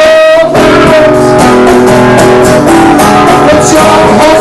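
A man singing live to his own strummed acoustic guitar, holding long notes over a steady strum.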